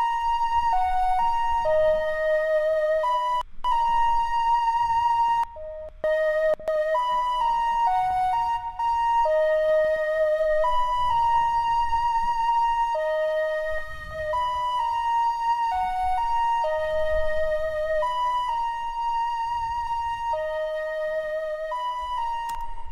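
A sampled flute melody in an FL Studio beat playing on its own while its EQ is adjusted: a simple tune of held notes with vibrato, stepping between a few pitches, with brief breaks between phrases.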